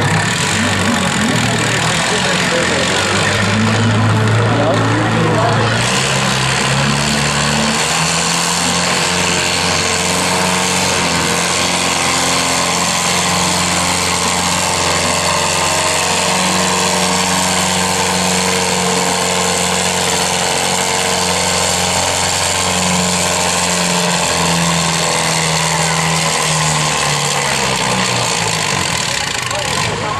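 Minneapolis-Moline U tractor's four-cylinder engine running under full load while pulling a sled. Its pitch climbs a few seconds in, then holds steady with a brief dip later on, and it eases off near the end of the pull.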